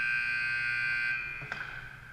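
Arena horn sounding steadily to mark the end of the period, stopping about a second in and echoing away through the rink. A sharp click comes about a second and a half in.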